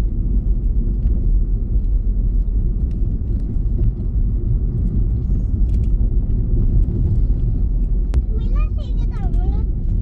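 Steady low rumble of a car's engine and tyres heard from inside the moving car. A brief high-pitched voice comes in near the end.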